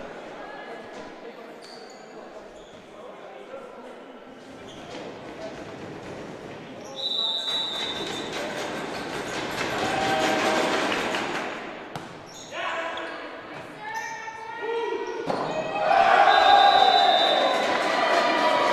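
Volleyball rally in a large gymnasium: a ball bouncing, then a whistle about seven seconds in and players' and spectators' shouts that build through the rally. Louder shouting with another whistle near the end as the point is won.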